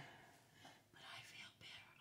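Near silence, with a few faint, soft, short hissing sounds about a second in.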